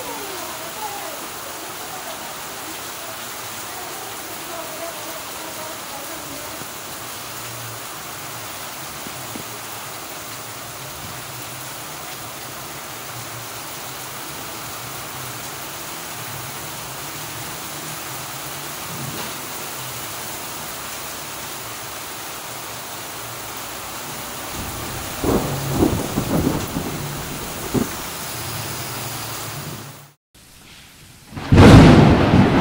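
Heavy tropical-storm rain falling steadily on a flooded street and roofs. Several loud, low rumbling bursts come near the end.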